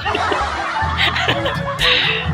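Laughter, with music playing in the background.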